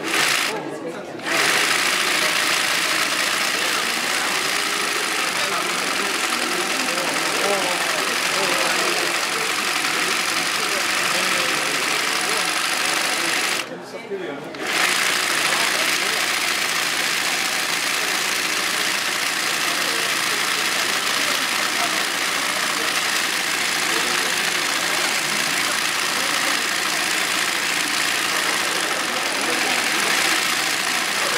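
Industrial swing-needle (yokofuri) sewing machine running continuously at speed as hand-guided embroidery is stitched. It starts up again about a second in and stops for about a second near the middle before running on.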